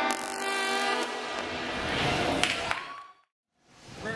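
Trombone section playing a loud, held brass chord that fades out, with a short upward slide near the end. The sound then cuts out completely for about half a second before the playing resumes.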